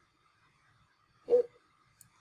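A single brief voiced sound about a second in, like a short hum or grunt from a person, over a faint steady electronic whine.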